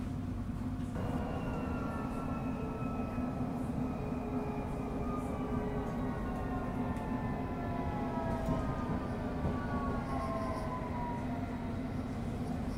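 Electric motor whine of a London Underground S8 Stock train pulling away from a station, heard inside the carriage. A steady low hum runs under a set of tones that come in about a second in and slowly fall in pitch as the train gathers speed.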